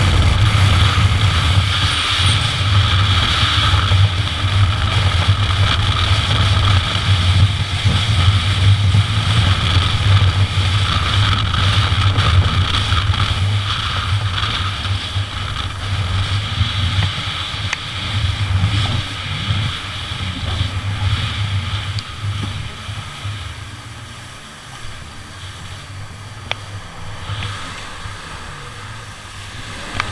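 Jet ski engine running at speed with a steady low drone, water rushing and spraying past the hull. About twenty seconds in it eases off and runs noticeably quieter to the end.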